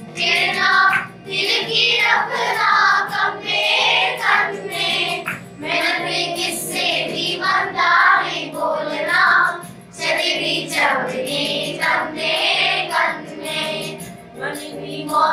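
A group of schoolchildren singing a Kashmiri folk song together, phrase after phrase with brief breaths between.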